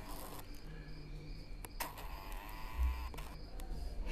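Crickets chirping in a steady, evenly repeating high pulse. Two sharp clicks come a little before the two-second mark, and a low thump a little before three seconds.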